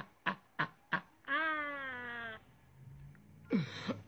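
A man laughing: four quick bursts, then one long, drawn-out falling wail of laughter lasting about a second.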